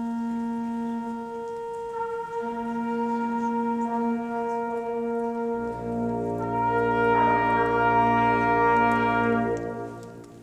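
Brass quintet playing slow, sustained chords in a reverberant church, the harmony changing every few seconds. About halfway through a deep bass note enters under the chord, which swells and is cut off near the end, leaving a short echo.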